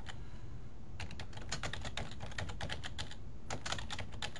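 Typing on a computer keyboard: a quick run of keystrokes starting about a second in, a short pause, then a few more keystrokes near the end.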